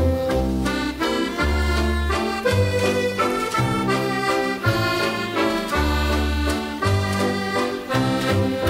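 Instrumental break between sung verses of a traditional Scottish bothy ballad: a melody of held notes over a regular alternating bass-and-chord accompaniment.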